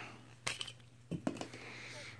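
A sharp plastic click about half a second in, then a couple of fainter knocks and light handling noise as a digital instant-read probe thermometer is opened, over a steady low hum.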